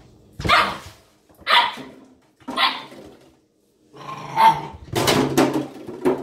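Ibizan Hound puppy barking: three short barks about a second apart, then a longer, louder run of barks near the end.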